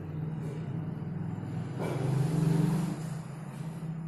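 A steady low hum, with a motor vehicle going by that swells to the loudest point about two seconds in and fades after about a second.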